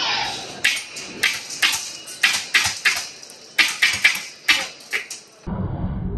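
The TTI Dracarys Gen 12 HPA airsoft shotgun, built by Wolverine, firing a rapid string of about fifteen sharp pneumatic shots, roughly three a second, each sending a spread of eight BBs. A low rumbling noise takes over near the end.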